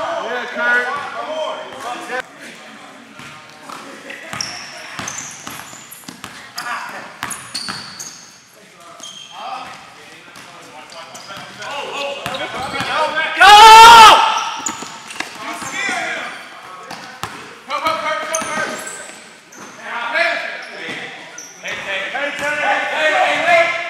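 Indoor basketball game in a gym hall: a ball bouncing on the hardwood-style court, sneakers squeaking and players calling out. A loud shout rises above it about two-thirds of the way in.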